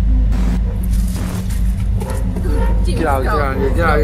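Car engine running with a steady low rumble, heard from inside the cabin, with a few light knocks in the first two seconds. A voice starts speaking about three seconds in.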